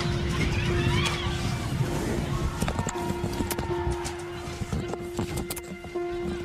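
A string of sharp cracks, gunshots at a high school football game, with crowd voices shouting in the first second or two, under a held note of background music.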